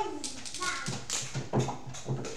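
A laugh trailing off, then light taps and crinkling as a plastic water bottle and paper food wrappers are handled on a table.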